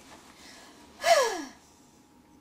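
A woman's breathy, sighing vocal exhale about a second in, falling steeply in pitch, with faint rustling before it.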